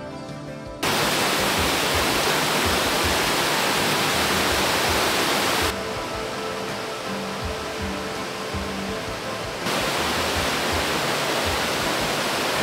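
Rushing water of a mountain stream cascading over mossy rocks, a loud steady hiss that starts suddenly about a second in, drops lower around six seconds and comes back loud near ten seconds. Soft background music plays underneath.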